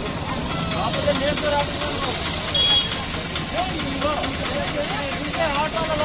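Several people talking, the words unclear, over a steady background rumble. A short high-pitched tone sounds about two and a half seconds in.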